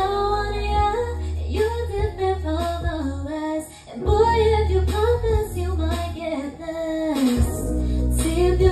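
A woman singing live into a microphone over a pop karaoke backing track with a steady bass, her voice gliding through long sung phrases. Both the voice and the track drop out briefly a little before the midpoint.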